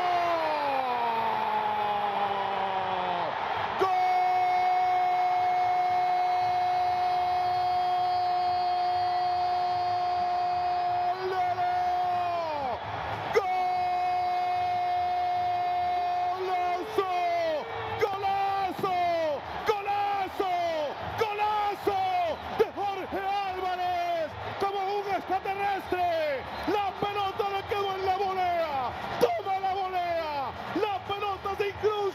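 A Spanish-language football commentator's goal call: one long held shout of about eight seconds, a brief break, a second held shout, then a string of short falling shouts about one a second, with stadium crowd noise underneath.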